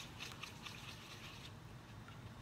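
Paintbrush being swished and tapped in a small plastic bowl of rinse water, making faint light splashes several times a second that stop about a second and a half in.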